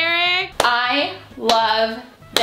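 A woman's voice in short drawn-out, sung-like vocalisations rather than words, with two short sharp sounds about half a second and a second and a half in.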